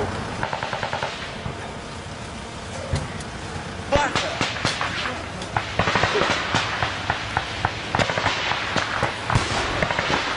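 Small-arms gunfire: scattered rifle shots and short bursts of automatic fire. The shots are few and far between at first and come thick and fast from about four seconds in.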